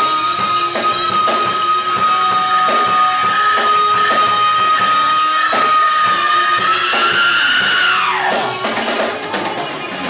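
Live rock band playing: a lead guitar holds one long sustained note for about eight seconds, bends it slightly up and then slides down near the end, over a drum kit keeping the beat.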